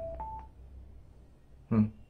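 Bluetooth speaker's electronic prompt chime: two short beeps right at the start, a lower note followed by a higher one. Near the end, a brief, louder vocal sound.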